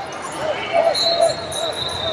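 Ambience of a large indoor arena: distant shouted voices, with short calls through the middle, echoing over a general background murmur and a faint steady high-pitched tone.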